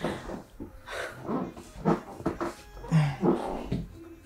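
A person's voice in short, irregular bursts without clear words.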